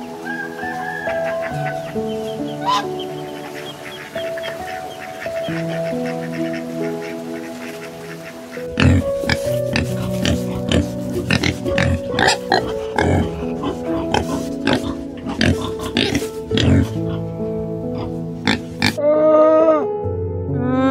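Background music with steady sustained notes. About nine seconds in, a wild boar starts grunting over the music, again and again for about ten seconds. Near the end, a camel starts a long call.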